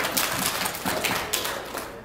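Congregation applauding in a church sanctuary: a dense patter of hand claps that thins out and fades toward the end.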